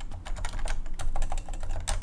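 Typing on a computer keyboard: a quick, irregular run of keystroke clicks as a line of code is entered.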